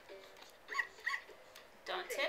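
Electronic baby toy playing a recorded dog bark: two short barks about a third of a second apart, then a sharp click near the end as the plastic toy is knocked over.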